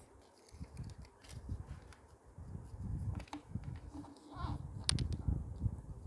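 Origami paper being folded, tucked and pressed flat by hands on a board: uneven low bumps and rubbing, with a few sharp clicks.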